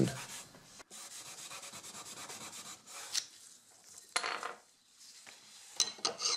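Abrasive fleece wrapped around a block, rubbed back and forth over a putty-filled patch in walnut veneer to take off the excess filler and level it. The strokes are quick and even at first, then a few louder swipes come about three and four seconds in.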